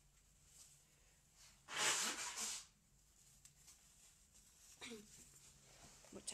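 A woman's brief coughing fit about two seconds in: a harsh burst of three quick coughs lasting under a second, from an illness she is not yet fully over.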